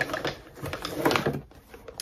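Irregular rustling and light clicks from handling a silicone kitchen utensil set, dying away about a second and a half in.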